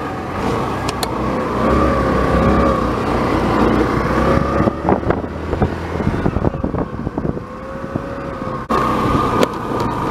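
Motor scooter engine running under throttle as the scooter rides along, with a steady whine that wavers in pitch and drops off briefly near the end.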